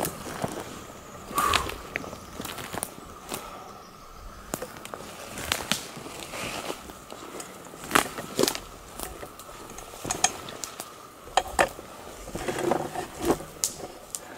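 Footsteps through forest undergrowth of sticks and pine needles: an irregular run of snaps, crackles and crunches underfoot.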